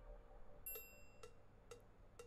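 Faint ticking, about two ticks a second, the first with a brief bright ring, over a quiet held tone.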